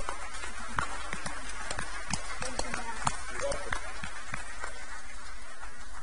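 Congregation applauding, many irregular individual hand claps at the close of a baptism.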